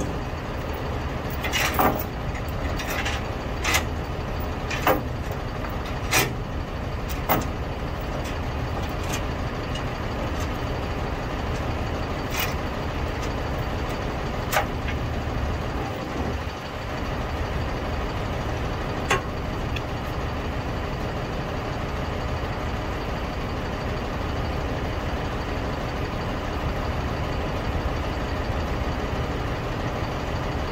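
Dump truck's diesel engine idling steadily, with sharp clicks about once a second over the first ten seconds and a few more later, from a ratchet tie-down being tightened to secure the load on the trailer.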